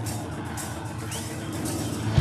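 Live rock band playing: a distorted electric guitar holds a steady chord over drums and cymbals.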